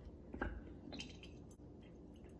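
Faint handling sounds from a ROK manual lever espresso maker as its lever arms are raised during the preheat, with a few light clicks about half a second and a second in.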